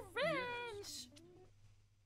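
A short, high-pitched, meow-like whining cry that rises and then falls in pitch, lasting under a second.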